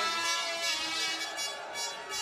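A long, steady blast of an air horn from the crowd at a fight, fading out near the end.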